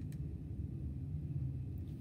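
Quiet room tone: a steady low hum, with no clear sound of the marker on the paper.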